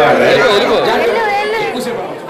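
A group of children chattering and calling out at once, many high voices overlapping, growing quieter toward the end.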